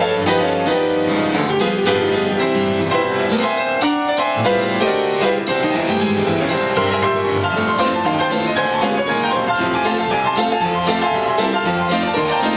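Two pianists playing a ragtime blues piano duet: a busy, bouncing run of fast notes and full chords across the keyboard without a break.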